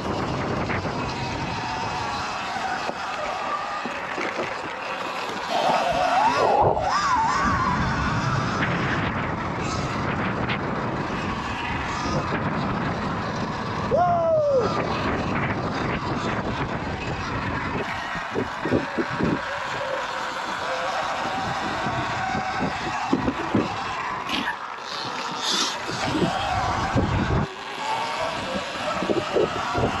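Electric dirt bike ridden over a dirt track, with wind on the microphone and tyre and chassis noise. The motor's whine rises and falls a couple of times, and a run of sharp knocks from bumps comes in the second half.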